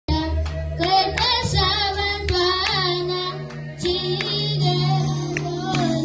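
Children's choir singing with instrumental backing: held low bass notes and sharp percussive hits keeping the beat.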